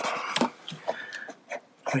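Microfiber towel rubbing briefly over the plastic centre console, followed by a few light clicks and knocks of handling.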